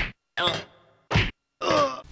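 A banging sound effect: four short, sharp hits about half a second apart.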